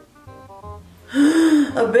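Quiet background music with a light beat, then about a second in a loud, drawn-out voiced gasp from a woman letting out a breath she had been holding.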